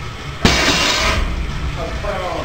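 Loaded barbell set down after a sumo deadlift: its weight plates crash down about half a second in, with a clatter that carries on after the impact.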